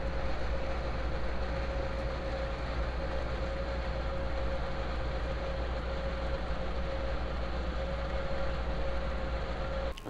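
Oven running while a turkey roasts inside: a steady hum and whir with one steady whine.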